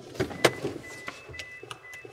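A car door unlatching and swinging open, with sharp clicks and knocks as the driver climbs out, while a high electronic warning chime beeps repeatedly: the car's door-open or key-in-ignition chime.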